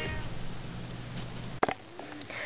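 Faint hiss and low hum as the music ends, broken about one and a half seconds in by a sharp click at an edit cut, followed by quiet room tone.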